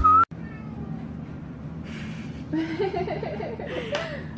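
Music cuts off abruptly just after the start. After a stretch of quiet room sound, a house cat meows with wavering calls during the last second and a half.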